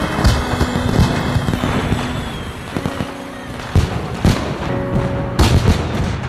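Fireworks going off: bangs at irregular intervals with crackling in between, the loudest near the end, over background music.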